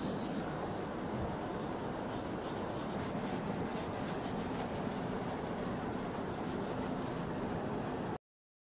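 A cloth rubbing oil across the surface of an oil painting in repeated strokes, oiling out dull patches of the paint.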